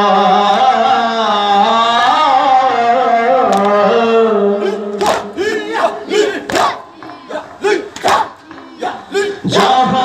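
A male reciter sings a noha, the Shia lament, in long held lines. About halfway through, the mourners' matam comes in: sharp chest-beating strikes in a beat of roughly two a second, between short chanted phrases from the group.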